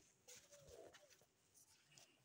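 Near silence with a faint, low bird call from about a third of a second in, lasting under a second.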